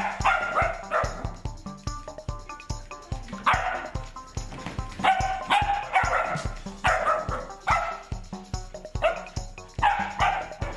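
Puppies yipping and barking in rough play, short sharp calls every second or so, over background music with a steady beat.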